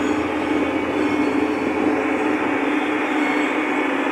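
Tractor engine running steadily under way, heard from inside the closed cab as a constant drone with a strong low hum.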